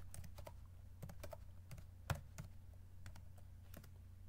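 Faint computer keyboard typing: a run of irregular key clicks as a terminal command is typed, with one louder keystroke about halfway through.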